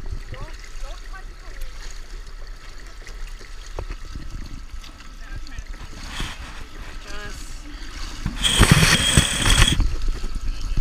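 Pool water lapping against the gutter edge at the microphone, then loud splashing for about a second and a half near the end as a freestyle swimmer's strokes arrive at the wall close by.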